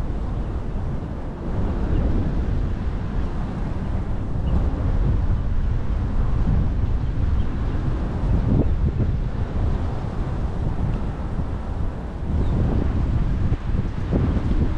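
Wind buffeting the microphone in gusty low rumbles, over choppy bay water lapping against a concrete seawall.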